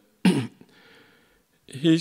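A man clearing his throat once into a podium microphone, a short loud burst about a quarter second in, followed by a faint breath; speech resumes near the end.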